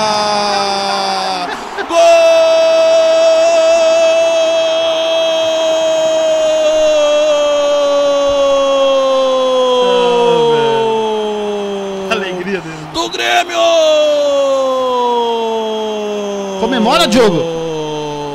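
A Brazilian radio football narrator's drawn-out goal cry. It is one shouted note held for about ten seconds and falling slowly in pitch, then taken up again on fresh breaths, the sign that a goal has just been scored.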